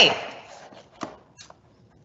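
Plastic cling wrap being handled and pressed around a cardboard chip can, giving two short crinkles about a second and a second and a half in.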